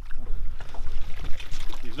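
Water splashing and sloshing as a small trout is brought in a landing net at the boat's side, over a steady low rumble.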